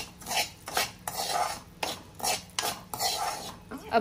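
Steel spoon stirring and scraping in a metal kadhai, working sugar into singhara flour browned in ghee, in a run of quick, irregular scraping strokes.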